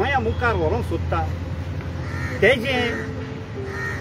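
A man speaking, with pauses, over steady background tones and a low hum.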